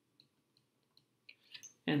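A few faint, irregular clicks of a stylus tapping and scratching a writing surface while a word is handwritten. A man's voice starts just before the end.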